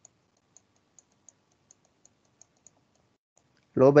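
Faint, light clicks of a computer input device, irregular at about two or three a second, while a word is handwritten onto the screen; a man's voice begins just before the end.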